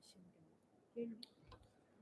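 Faint clicks and a soft low thump of a podium's gooseneck microphone being handled, over near silence, with a brief faint voice about halfway through.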